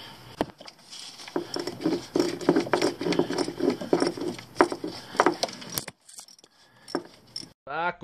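Hand ratchet clicking in short strokes as it works a valve-cover bolt through a short socket and extension, with light metallic clinks of the tools. The clicking stops about six seconds in.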